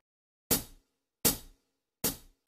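Two short, sharp drum hits about three quarters of a second apart, each dying away quickly, opening a karaoke backing track.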